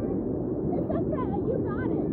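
Steady rush of river current around float tubes in a small rapid, with high-pitched laughter breaking in from about a third of the way through.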